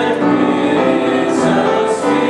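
Congregation singing unaccompanied in slow, long-held notes, many voices together.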